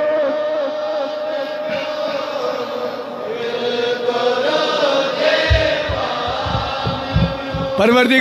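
Voices chanting a devotional refrain, sustained and wavering in pitch, with a run of low thumps in the second half.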